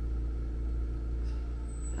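A steady low mechanical hum of an appliance running in the room.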